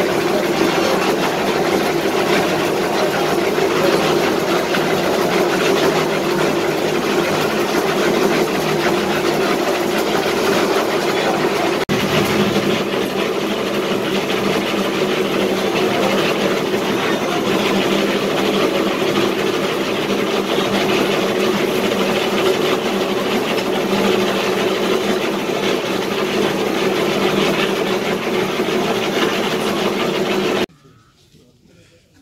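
Engine-driven concrete mixer running steadily. It dips briefly about twelve seconds in.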